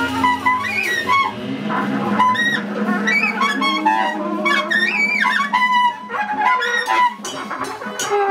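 Free-jazz quartet playing live: tenor saxophone and trumpet play fast, wavering, overlapping lines over a sustained bowed double bass note and drums with cymbal strokes.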